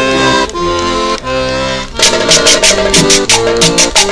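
An accordion cumbia record playing: accordion chords alone at first, then about halfway through a quick, steady percussion beat comes in under them.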